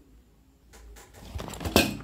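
Handling noise: the phone is picked up and turned while a plastic zip pouch of manicure pliers is grabbed. Rustling builds up after a quiet start, with one sharp bump near the end.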